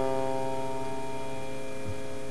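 The final strummed chord of a song on acoustic guitar, ringing out and slowly fading, with a faint low thump near the end.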